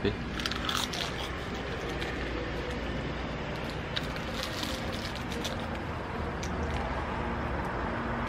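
Close-up eating sounds over a steady street background: a crisp seaweed-wrapped rice triangle being bitten and chewed, with light crackles from its plastic wrapper. The crackles and crunching are clearest about four seconds in.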